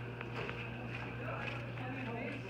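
Indistinct background chatter of several people in a large hall, over a steady low hum, with a few light taps.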